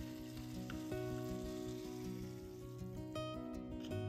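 Gobi Manchurian sizzling as it fries in a miniature steel kadai over a small flame, with background music. The sizzle thins out in the last second.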